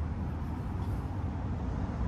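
Steady low outdoor background rumble with no distinct events.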